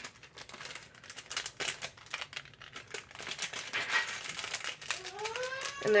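Clear plastic bags crinkling and crackling as they are handled, in a run of quick irregular crackles.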